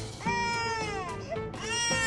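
German Shepherd dog giving long, high-pitched whining howls: one wail starting about a quarter second in that slides down in pitch over about a second, and another starting near the end. Background music runs underneath.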